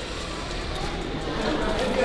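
Steady background hubbub of a busy room with faint, distant voices, slowly growing louder.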